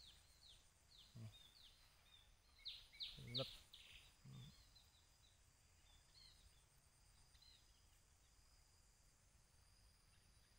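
Quiet outdoor background with small birds chirping in short, repeated falling notes that thin out and stop about seven seconds in. Three brief low voice sounds come about one, three and four seconds in.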